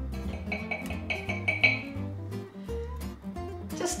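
Instrumental background music: plucked guitar notes over a bass line.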